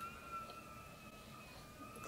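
Quiet room tone with a faint, steady high-pitched whine that wavers slightly in pitch.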